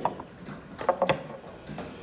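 Cloth rubbing and rustling as a small wooden figurine is buffed with beeswax, with a few short scuffs and knocks, once at the start, twice about a second in and twice near the end.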